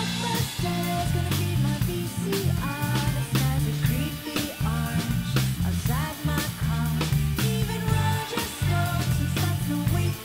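Live rock band playing: a drum kit keeps a steady beat under a prominent moving bass line, with other pitched instruments above.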